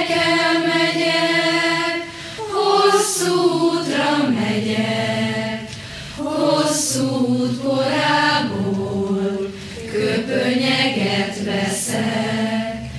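A large group of young voices singing a slow Hungarian farewell song together in unison, in long held notes, with short dips between phrases every couple of seconds.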